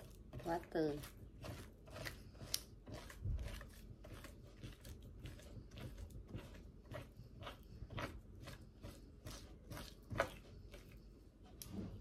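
Knife cutting and scraping along a raw mackerel fillet on a plastic cutting board: a run of short, irregular scrapes and taps, the sharpest about ten seconds in. A brief murmur of voice just under a second in.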